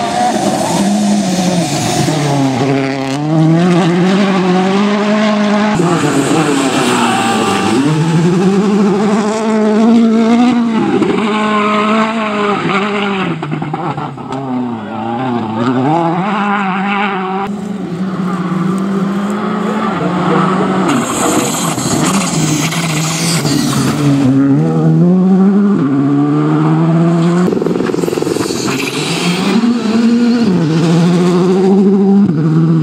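Rally cars on a loose gravel stage, engines revving hard and falling back again and again through gear changes and braking. The pitch climbs and drops many times as one car after another passes.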